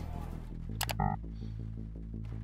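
Background thriller-style score: low sustained bass notes under a fast, evenly ticking pulse, with a brief tone about a second in.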